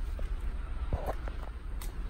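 Footsteps on concrete and the rustle of a handheld phone being moved, with a couple of faint knocks, over a steady low rumble.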